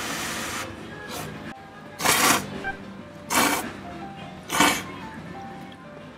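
A person slurping thick ramen noodles from a bowl, four short loud slurps spaced a little over a second apart, over background music.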